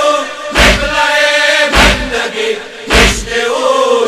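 Group of men chanting a Persian lament in unison, with three loud thumps of synchronized chest-beating (matam), about one every 1.2 seconds.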